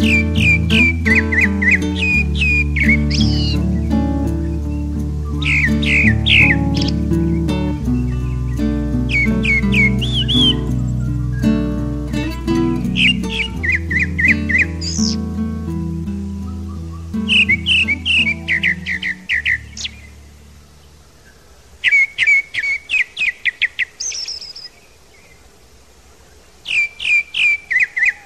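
Grey-backed thrush singing: about seven short phrases a few seconds apart, each a run of repeated clear whistled notes dropping in pitch, often closed by a higher note. Soft background music with held low notes plays under the song and fades out about two-thirds of the way through.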